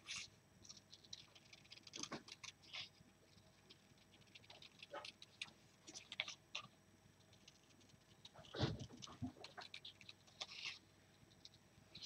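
Faint, irregular snips and paper rustles from small scissors cutting scrapbook paper, with a single dull thump about nine seconds in.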